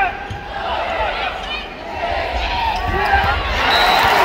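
Volleyball being hit back and forth in a rally on an indoor court, over the noise of a large arena crowd that swells toward the end.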